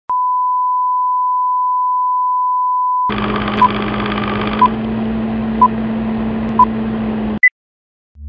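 Steady test tone over colour bars for about three seconds, then a film-leader countdown: a steady hum with crackling noise and a short beep each second, four beeps, then one higher beep just before the sound cuts off.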